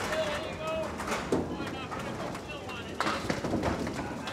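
Candlepin bowling ball rolling down a wooden lane, then striking the candlepins with a clatter about three seconds in, over the murmur of a crowd of spectators.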